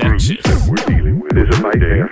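Electronic music: a deep synth bass that swoops down and back up in pitch about twice a second, in a steady loop, with sharp clicks between the swoops.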